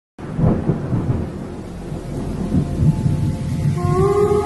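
Thunder rumbling over steady rain. Shortly before the end, the sustained notes of a song's intro come in.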